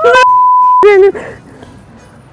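A flat, steady censor beep lasting just under a second, laid over a woman's speech, with short bits of her voice right before and after it.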